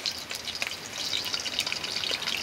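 Chopped garlic frying in oil in a shallow metal wok, a fine crackling sizzle with many tiny pops, while a metal spoon stirs it. The sizzle grows a little louder about a second in.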